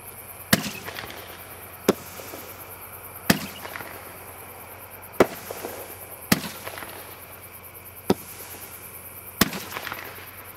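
A multi-shot consumer fireworks cake firing: seven sharp bangs, irregularly spaced one to two seconds apart, several with a short echo trailing off.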